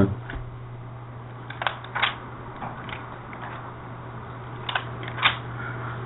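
A few short, soft clicks and rustles, spread irregularly through a pause, over a steady low hum.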